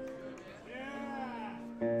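Electric guitars on a live stage: held notes die away, a pitched sound glides up and back down, then a full guitar chord rings out near the end.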